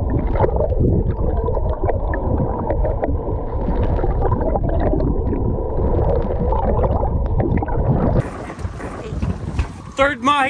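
Muffled underwater churning and bubbling with scattered crackles and a faint steady hum, picked up by a camera held below the surface while a hooked mahi-mahi thrashes at the surface. About eight seconds in the sound changes abruptly to wind on an above-water microphone.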